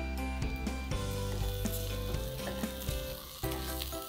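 Raw rice being fried in ghee in an aluminium pressure cooker pot, stirred with a spatula: a light sizzle with many small scraping ticks of the spatula and grains against the metal. Soft background music with held notes plays underneath.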